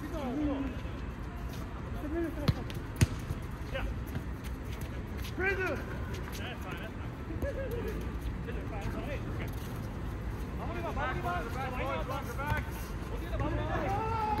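Futsal ball being kicked and bouncing on a hard outdoor court during play, with two sharp strikes about half a second apart a few seconds in. Players' distant shouts and calls are heard around them.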